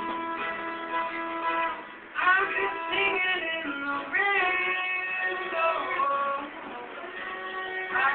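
Live acoustic music: an acoustic guitar with a melody over it that slides up into its notes, getting louder about two seconds in.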